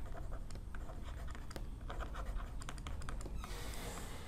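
Stylus writing on a digital pen tablet: faint, quick, irregular taps and scratches of the pen tip as a word is handwritten.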